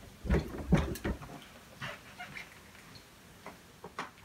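Footsteps thumping down a flight of stairs in the first second, then a quieter stretch with a few light knocks.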